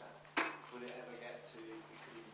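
A single sharp clink of a hard object knocked or set down, with a short high ring, about half a second in. Faint distant speech follows.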